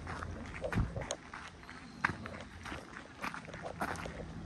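Footsteps crunching on a gravel path, a short crunch every half second to a second.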